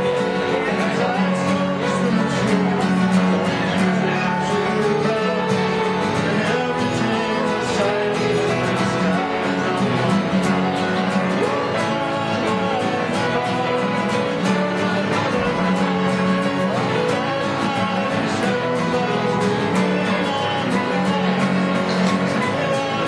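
A man singing a folk song to strummed acoustic guitar and a digital piano playing along, steady throughout.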